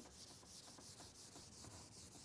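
Faint scratching of a marker pen writing on a white board, in a quick run of short strokes.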